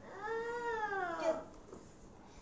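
A young child's voice making one long, wordless, drawn-out cry that rises a little then falls in pitch, lasting about a second and a half.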